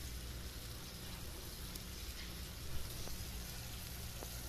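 Vegetables sizzling and simmering in a black iron wok: a soft, steady hiss, with one faint click about three seconds in.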